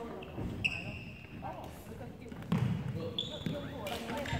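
Sports shoes squeaking twice on a wooden indoor court, one squeak about half a second in and a higher one near the end, with a thud between them. Faint voices carry in the hall.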